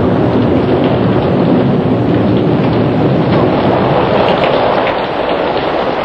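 Storm sound effect: a steady, dense rush of rain with low rumbling thunder underneath.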